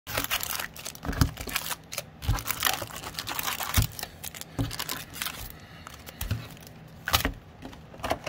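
Foil trading card packs crinkling as they are handled and pulled out of a cardboard box, with about six dull knocks as packs and box are set down or bumped.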